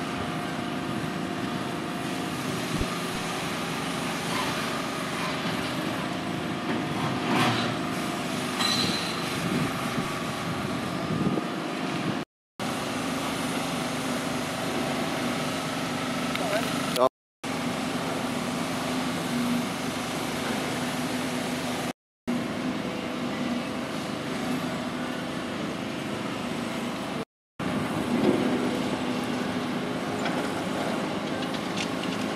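Demolition excavators running steadily with diesel engines and hydraulics, with the crunch and clatter of concrete rubble being crushed and broken. The sound drops out to silence four times for a split second.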